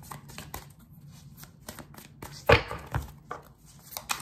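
A deck of tarot cards being shuffled and handled by hand: a string of small card clicks and flicks, with one louder knock about two and a half seconds in.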